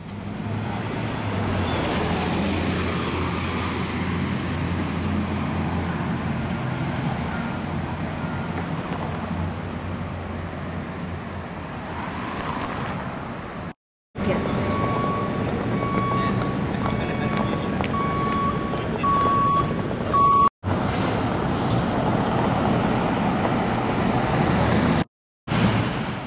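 Steady city street noise, with traffic and a constant hiss of steam venting from the Gastown steam clock, broken by a few abrupt cuts. Midway a high electronic beep repeats about once a second for several seconds.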